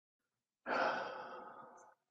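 A man's long breathy sigh that starts suddenly about half a second in and fades away over about a second and a half.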